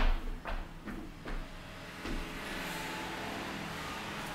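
Footsteps on a hardwood floor: four or five short knocks with low thuds, the loudest at the start, then a steady hiss from about halfway.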